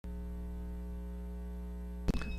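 Steady low electrical mains hum with a buzzy edge, unchanging throughout.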